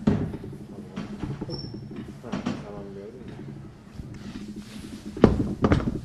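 Chairs being pulled out and shifted at a table, with scrapes and knocks. The loudest are two sharp knocks about five seconds in.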